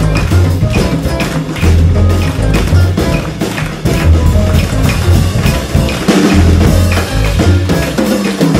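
Live jazz band playing a Cape Verdean song, with drums and percussion keeping a steady beat over a low bass line.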